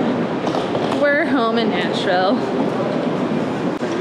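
Steady hum of a large airport terminal hall, with faint voices in the background.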